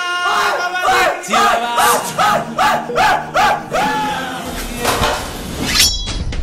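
A man's voice doing a jungle-call yell, a run of warbling rising-and-falling cries about three a second, over background music.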